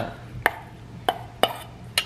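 Metal spoon knocking and scraping against a stainless steel mixing bowl while wet diced tuna poke is spooned out into a serving bowl: four or five sharp clinks roughly half a second apart.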